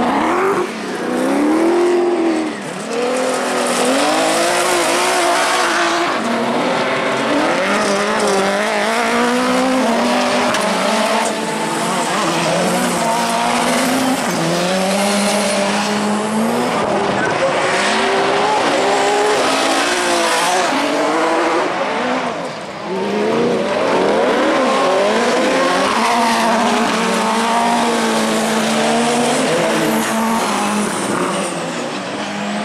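Several autocross buggy engines revving high and dropping again and again, overlapping, as the cars accelerate and lift through the corners of a dirt track.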